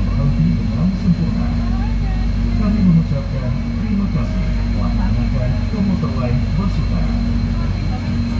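Steady low hum of an electric train running, heard from inside the carriage, with a thin steady high tone above it. Indistinct chatter of passengers talks throughout.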